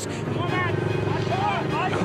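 Motorcycle engine running steadily close by, with a voice speaking over it.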